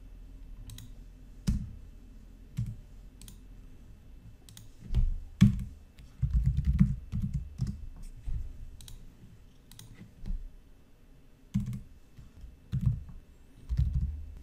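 Typing on a computer keyboard, with mouse clicks, in irregular short bursts; the busiest run of keystrokes comes about six to seven seconds in.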